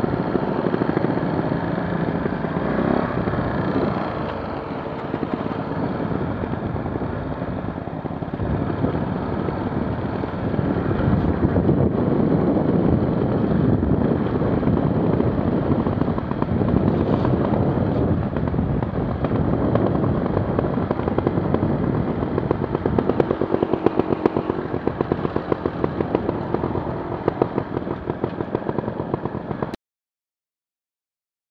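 Trial motorcycle engine running as the bike rides along a rough dirt track, heard from the rider's own bike, with clattering over the rough ground. The sound stops abruptly just before the end.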